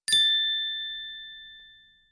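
A single ding of a chime sound effect: struck sharply just after the start, ringing in two clear tones, and fading away over about two seconds.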